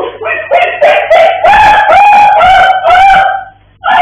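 A man screaming in pain after a stingray sting: a string of loud, drawn-out cries, short ones at first and then longer held wails, with a brief break near the end.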